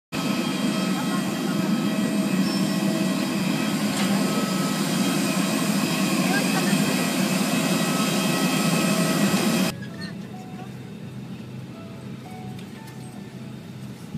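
Steady whine and rumble of a parked jet airliner on the apron, with its auxiliary power unit running while passengers board. About ten seconds in it cuts off abruptly to the quieter, steady hum of the aircraft cabin.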